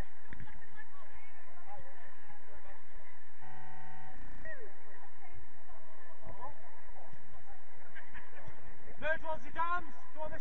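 Players' voices calling and shouting across an outdoor football pitch over a steady background hum, with a louder shout near the end. About three and a half seconds in, a short steady horn-like tone sounds for under a second.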